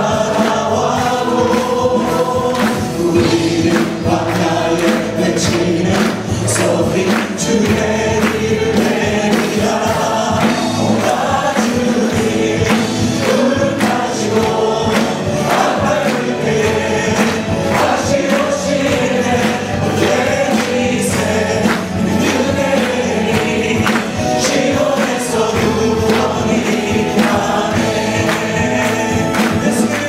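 A mixed worship team of men and women singing a Korean praise song into microphones over instrumental backing, loud and continuous, with long held notes.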